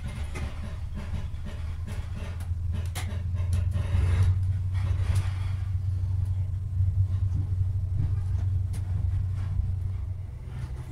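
Inside a Mark 3 coach of a Class 43 HST on the move: a steady low rumble and hum of the running train, a little louder about four seconds in, with a few sharp clicks and knocks from the wheels and running gear.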